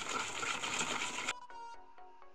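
A whisk beating eggs, sugar and vegetable oil by hand in a bowl, a dense, rapid steady noise. About a second and a half in it cuts off suddenly and background music with clear, bright notes takes over.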